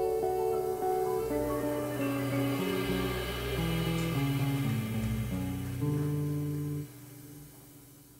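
Live jazz quartet playing the slow closing bars of a song, held notes changing every half second or so. The music ends about seven seconds in, leaving only a faint fading tail.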